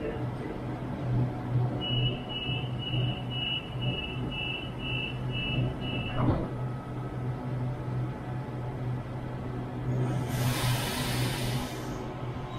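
Waratah double-deck electric train standing at a platform with its equipment humming steadily. The door-closing warning beeps about twice a second for some four seconds, then the doors shut with a knock about six seconds in. A loud hiss of air follows near the end.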